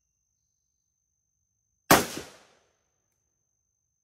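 A single rifle shot from a Hungarian AK-63DS, a 7.62×39mm AKM-pattern rifle, about two seconds in. A short echo rolls off for about half a second after it.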